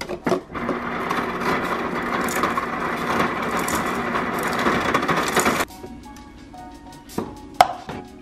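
Refrigerator door ice dispenser dispensing crushed ice into a glass: a loud, dense rattling for about five seconds that stops suddenly. A few sharp knocks follow near the end.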